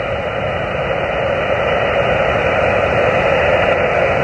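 Xiegu G90 HF transceiver's speaker giving steady band hiss on 12 metres, with the receiver open between transmissions and no station audible. The hiss is narrowed by the SSB filter to a thin voice-band rush.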